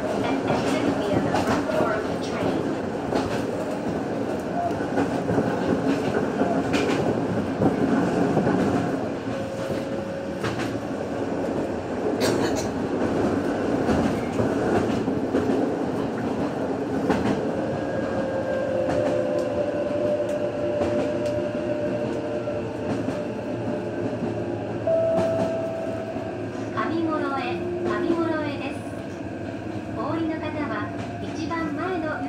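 Electric commuter train running on the rails: a steady rumble of wheels on track with scattered clicks. A whine shifts in pitch near the end.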